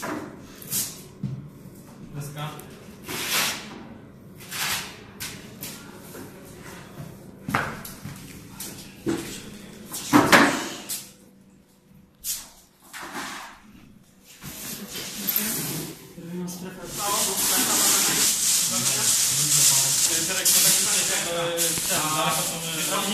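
Scattered rustles and knocks of people moving and handling gear. From about two-thirds of the way through, a foil rescue blanket crinkles loudly and continuously as it is spread over a casualty.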